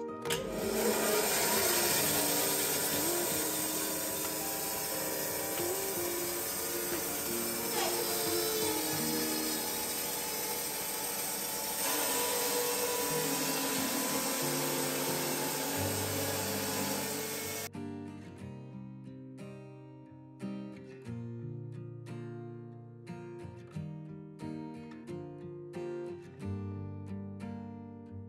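Electric Wood-Mizer band sawmill cutting through a log, with a scoring blade nicking the log ahead of the band blade, over background music. The sawing cuts off suddenly about two-thirds of the way through, leaving only plucked guitar music.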